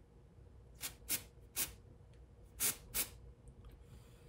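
Aerosol can of 2P-10 cyanoacrylate glue activator sprayed through its straw nozzle in five short hissing bursts, starting about a second in, to set the glue on a small part.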